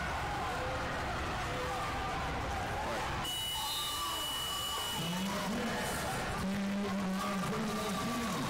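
A steady high electronic beep starts about three seconds in and holds for nearly three seconds: the match timer's end-of-period buzzer as the clock runs out. Voices shout across the arena around it.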